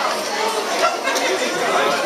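Crowd chatter: many people talking at once, their overlapping voices filling a busy hall of shoppers.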